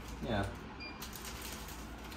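Faint crinkling and rustling of an instant-ramen seasoning packet as it is torn open and the dried flakes are shaken out into a pot, over a low steady hum.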